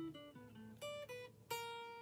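Electric guitar played single-note: a picked scale run stepping down in pitch, two more notes, then one note about one and a half seconds in left ringing and fading. It is the scale played in the sixth-fret position used over an F sharp chord.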